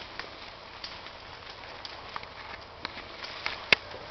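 Scattered small cracks and snaps of brush and branches, with one sharp crack near the end.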